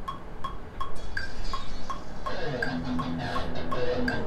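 Metronome click track from the DAW, about three clicks a second with a higher accented click on every fourth beat. About two seconds in, the soloed first recorded track, an electric guitar part, starts playing over the click.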